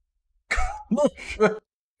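A man's short nonverbal vocal sounds, a few quick bursts lasting about a second and starting about half a second in.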